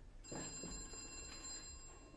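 A telephone bell ringing: one ring starting about a quarter second in, with a bright, steady ringing tone that fades out near the end.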